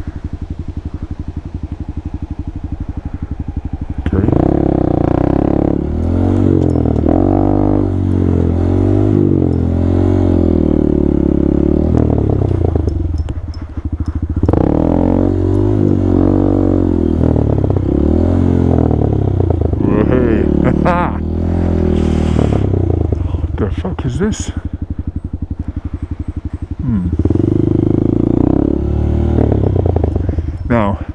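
Honda Grom (MSX125) 125 cc single-cylinder four-stroke engine running at low revs for about the first four seconds, then louder, with revs rising and falling as the throttle is worked over a dirt track, easing off briefly a few times.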